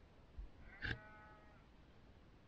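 A single faint animal call about a second in, holding one pitch for about half a second, with a soft knock just before it.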